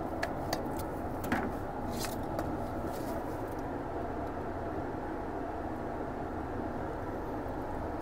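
Steady background hum in a spray-painting booth, with a few light clicks and taps from handling the plastic spray-gun cup and beaker in the first couple of seconds.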